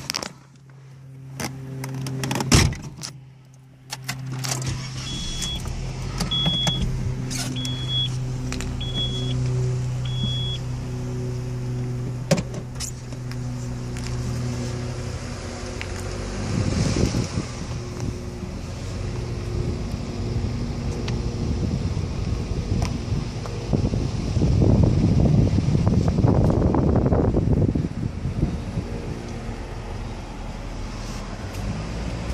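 A car: a thump about two seconds in, then five short high warning-chime beeps about a second apart over the engine idling steadily. About halfway through, the car pulls away and the engine and road noise swell unevenly, loudest near the end.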